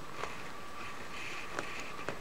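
Faint, scattered clicks of small wire cutters and fingers working at a tight plastic zip tie inside a cloth doll's neck, over a steady quiet room hiss.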